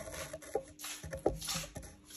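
Quiet, irregular rustling with a couple of light clicks, about half a second and a second and a quarter in, typical of handling and movement noise.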